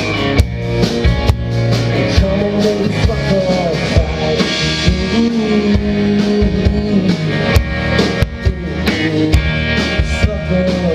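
Live rock band playing amplified: drum kit with steady hits, electric and acoustic guitars, and long held melody notes over them.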